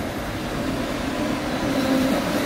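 Street traffic noise: a steady rumble and hiss of vehicles on the road, with a faint low hum.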